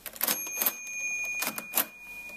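Keys of a Felt & Tarrant Comptometer mechanical calculator being pressed, a handful of sharp mechanical clicks. At the first keystroke a small bell rings and its tone hangs on: the bell that signals the first number entered after the register has been totalized.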